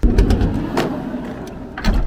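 Sliding side door of a Toyota HiAce campervan being pulled open. It starts with a sudden loud clunk and rumbles along its track, with a click partway through and a knock near the end as it reaches its open stop.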